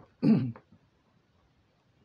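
A man clears his throat with one short, harsh cough about a quarter of a second in.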